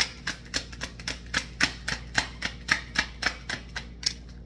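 A tarot deck being shuffled by hand, packets of cards clicking against each other about four times a second in a steady rhythm.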